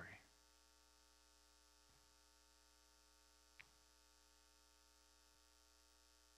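Near silence: a faint, steady electrical hum, with one soft click about three and a half seconds in.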